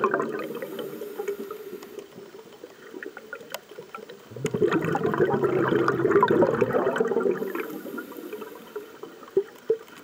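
Scuba diver's exhaled breath bubbling out of the regulator: a burst fading away over the first second, and another long burst from about four seconds in, lasting some three seconds. Faint scattered clicks come between the breaths.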